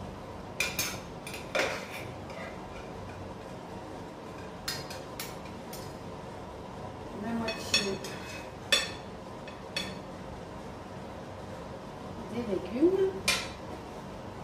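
Kitchen utensils knocking against dishes while food is served: about ten separate, irregular clinks, with a short sliding scrape shortly before the last, loudest clink near the end.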